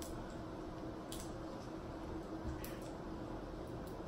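Faint eating sounds at a table: shrimp being peeled and handled over a foil pan, with three soft clicks against a low steady room hum.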